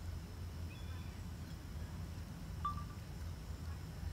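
Quiet outdoor ambience by shallow lake water: a steady low rumble with a few faint, brief high chirps, the clearest about two and a half seconds in.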